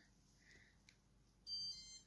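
Near silence, then a short high electronic beep lasting about half a second near the end.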